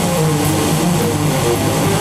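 Loud live heavy-metal band music: a dense, steady wall of distorted sound with no break.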